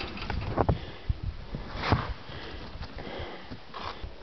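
A snow shovel scooping and scraping through deep, loose snow in a few irregular strokes, the loudest about two seconds in, with the rustle of a jacket close by.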